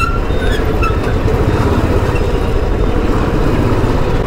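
Royal Enfield Standard 350's single-cylinder engine and exhaust running steadily under way, heard from the rider's seat.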